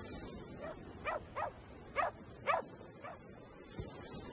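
A small dog barking: about six short barks in quick succession, the loudest two near the middle.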